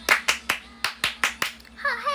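Hands clapping seven times in quick, even claps, three then a short break then four more. A voice with a falling pitch starts near the end.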